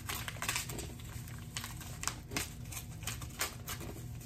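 A stack of baseball cards and its wrapping being handled on a tabletop: a run of irregular quick clicks and light rustling.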